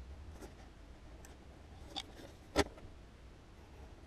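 A pencil drawing faint scratchy lines on paper along a steel ruler, with a light tap about two seconds in and a sharper knock half a second later as the ruler and paper are shifted on the bench.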